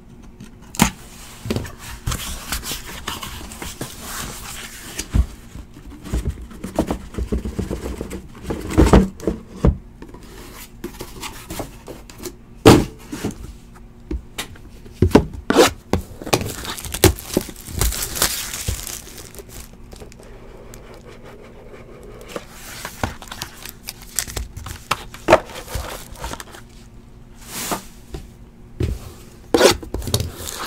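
Sealed Panini Dominion basketball card boxes being handled and opened: wrapping crinkling and tearing, cardboard scraping, and many sharp knocks as boxes are moved and set down on the table.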